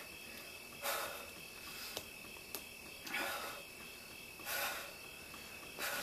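A woman breathing hard during an ab exercise: four short hissing breaths spaced about a second or more apart. A faint steady high-pitched whine runs underneath.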